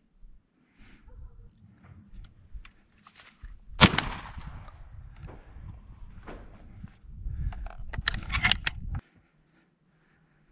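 A single close shotgun shot about four seconds in, sharp and echoing away. Fainter, sharper cracks and clicks come near the end over a low rumble of wind and handling noise.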